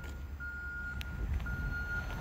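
An electronic warning beeper sounding a steady, single-pitched tone in long beeps with a short gap between them, over a low background rumble; a single faint click about a second in.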